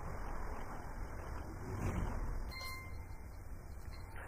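Room tone: steady low hum and hiss from the recording, with a short faint tone about two and a half seconds in.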